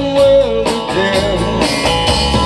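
Live blues-rock band playing an instrumental passage: electric guitars with bass guitar and drum kit.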